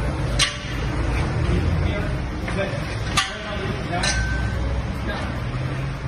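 Steady low rumble of a shop engine crane's casters and a car rolling on a concrete floor, with three sharp metal knocks about half a second, three seconds and four seconds in. Men's voices call out over it.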